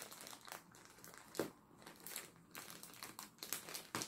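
Faint crinkling and crackling of a clear plastic bag wrapped round a pack of yarn skeins, as fingers pick at the tight wrap to open it. A scatter of small crackles, with one sharper one about a second and a half in.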